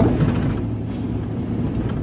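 Steady engine and road noise inside the cabin of a moving vehicle: a low, even hum.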